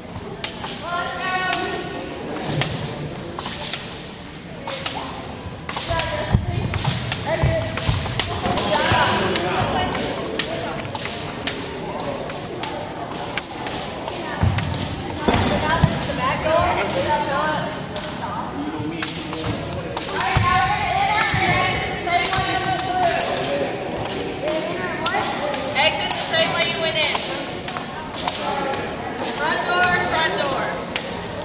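Repeated slaps and thuds on a wooden gym floor from long jump ropes being turned and children jumping, with children's voices ringing in the large hall.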